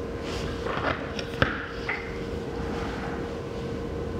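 Soft handling rustles and a sharp click as a PinePhone is picked up in the hand, over a steady faint hum.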